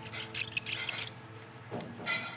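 A small paint roller scraping chalk paint over a grooved vinyl record: quick, scratchy strokes in the first second, then quieter. Faint background music runs underneath.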